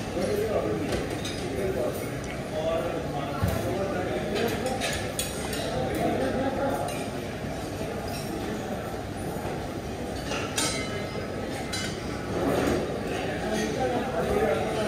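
Dishes and cutlery clinking at a busy buffet, in scattered sharp clicks, over a steady murmur of indistinct chatter.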